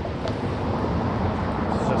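Steady low outdoor rumble with no clear events, apart from one faint click about a quarter second in.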